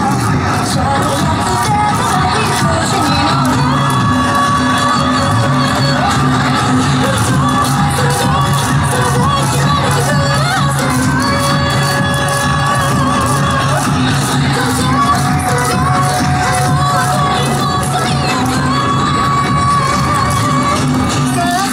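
Yosakoi dance music with a steady beat played loud over an outdoor PA, with shouting and cheering voices over it. Wind buffets the microphone.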